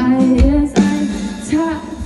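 Live pop band playing, recorded from the crowd: a female voice sings long held notes over guitar and drums.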